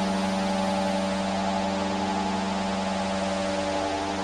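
Ambient electronic drone music: several steady held tones, the lowest the strongest, over a constant hiss, with no beat or melody.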